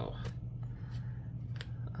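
A steady low hum with a few short, sharp clicks, two of them close together near the end.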